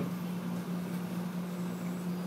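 A steady low hum holding one pitch, with faint background room noise.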